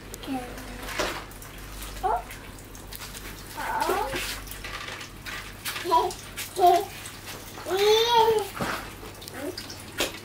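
Young children's voices: short, high-pitched wordless exclamations, with a longer rising-and-falling squeal about eight seconds in, over light knocks and clatter from their play.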